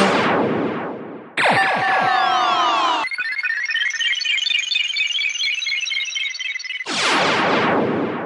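Electronic music made of synthesizer effects. A noisy sweep fades out, then a tangle of falling and rising pitch glides follows. A rapid run of short high blipping notes comes next, and another noisy sweep swells near the end.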